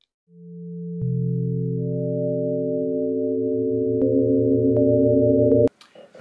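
A synthesized chord of pure, sine-like tones. The notes enter one after another to build a sustained chord, then it cuts off suddenly near the end. It plays like an edited-in transition sting.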